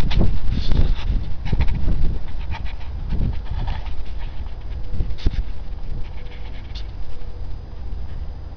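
Wind buffeting the microphone: an irregular, gusty low rumble that rises and falls, loudest in the first two seconds.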